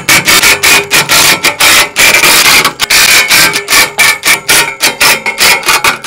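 Cordless impact driver hammering as it runs Torx bolts into a steel roof-rack side rail, in a series of loud, rapid rattling bursts.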